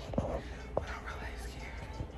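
A woman whispering close to a phone's microphone, with two soft knocks from the phone being handled in the first second.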